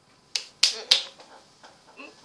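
Three finger snaps in quick succession, about a third of a second apart, the last two the loudest.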